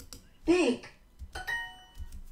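A synthesized voice says a single word, then a click and a short bright chime ring out about a second and a half in: the language-learning app's correct-answer sound.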